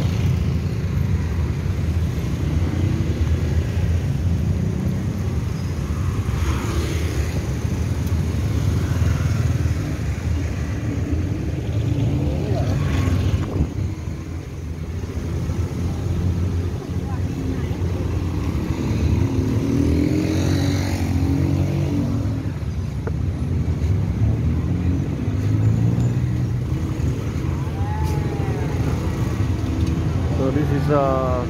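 Busy street traffic: cars and motorcycles passing with a steady low engine rumble, and passers-by talking at times.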